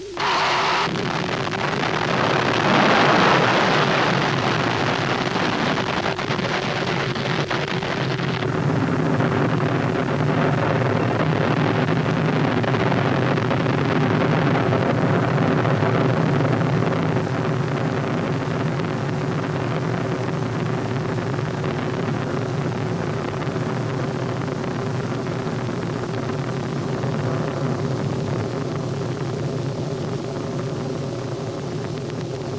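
Burya cruise missile's first-stage rocket boosters firing at launch. The sound starts suddenly and loudly with a harsh hiss, then the hiss drops away about eight seconds in, leaving a steady rumble as the missile climbs away.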